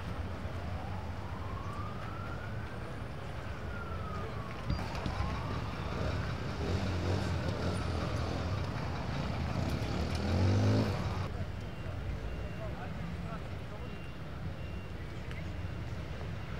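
An emergency-vehicle siren wails, rising and falling twice in the first six seconds or so, over a steady low rumble of street noise. About ten seconds in there is a brief louder rising sound.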